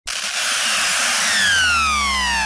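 Electronic intro sound: a loud rushing hiss with a low hum beneath, joined about a second in by several tones gliding steadily downward together.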